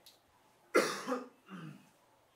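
A man coughs once, sharply, at a lectern microphone about three-quarters of a second in, followed by a shorter, fainter sound from the throat.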